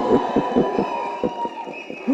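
A man laughing into a microphone in short, irregular breathy bursts that gradually die away.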